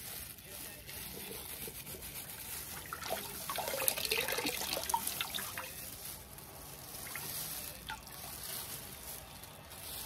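A mug on a stick dipped into a bucket of water and drawn back out, with water trickling and dripping. The splashing is busiest and loudest about three to five seconds in.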